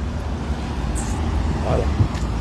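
Steady low rumble of road traffic, with no distinct events standing out.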